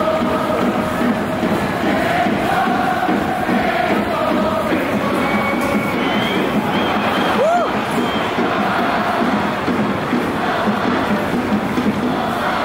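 Stadium crowd of Japan supporters chanting in unison over steady crowd noise. A short rising-and-falling tone cuts through about halfway through.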